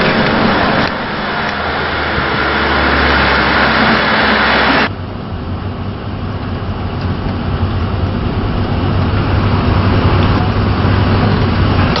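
Motor vehicle road noise: a loud, steady rush of passing traffic for about five seconds, then an abrupt cut to a quieter steady drone with a low engine hum, as of a car driving.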